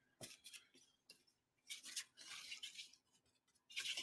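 Faint hand-held trigger spray bottle misting water onto paper: a few short hissing sprays, with small clicks between them.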